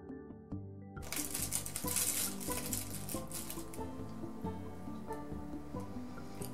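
Aluminium foil crinkling and crackling as it is pinched and folded shut around an epee blade, starting about a second in and thinning out towards the end, over background music.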